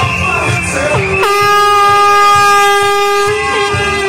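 A horn sounds one steady blast of about two and a half seconds, starting just over a second in, over carnival music with a beat.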